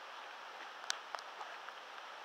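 Steady, soft hiss of rain falling in a wooded area, with a few sharp ticks about a second in.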